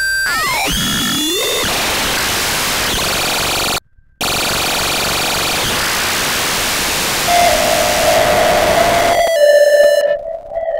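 Electronic glitch-noise music from a Max/MSP patch. Gliding synthesized tones give way to a loud, harsh noise wash, which drops out briefly just before four seconds in. A steady tone joins about seven seconds in, and near the end the noise stops, leaving held electronic tones.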